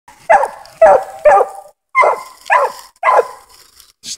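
Five-month-old English Coonhound barking treed: six short, loud barks about half a second apart in two groups of three, each dropping in pitch. It is the tree bark of a hound that has run a raccoon up a tree and is holding it there.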